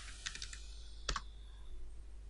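Computer keyboard keystrokes: a few faint taps early on, then one sharper keystroke about a second in.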